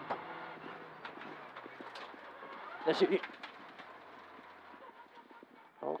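Mitsubishi Lancer Evo X rally car's turbocharged four-cylinder engine and road noise inside the cabin, fading steadily as the car slows after crossing the stage finish, with many small clicks and rattles throughout.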